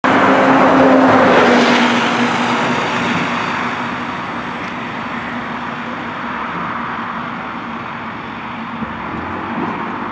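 A road vehicle passes close by with loud tyre and engine noise that peaks about a second in and fades over the next few seconds, followed by steady traffic noise.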